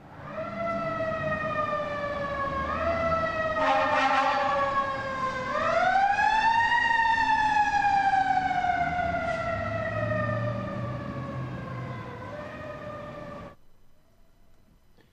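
Fire-engine siren wailing: its pitch jumps up about five seconds in and then slides slowly down, with a short blast a second or so before that. It cuts off suddenly near the end.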